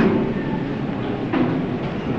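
Steady hiss and low rumble of an old hall recording during a break in a man's speech. About halfway through there is one brief faint sound.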